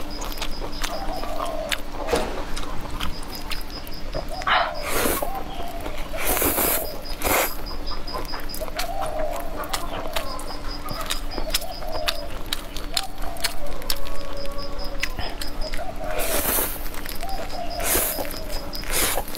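A mouthful of stir-fried rice noodles being slurped and chewed. There are several loud slurps about five, seven and sixteen seconds in. Behind it, a wavering call repeats about once a second.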